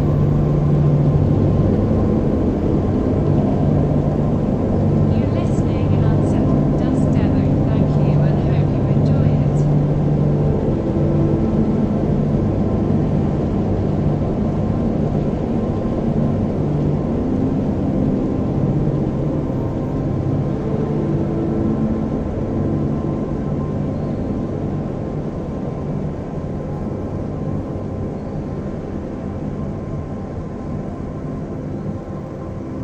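Dark ambient drone: a dense low rumble with held low tones that shift slowly, a few faint high chirps about five to ten seconds in, and the level slowly falling toward the end.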